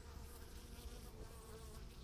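Faint, steady buzzing of honey bees at the hive entrance.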